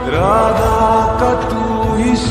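Slowed-and-reverb Hindi devotional song: a sung note slides up at the start and is then held over a steady low beat.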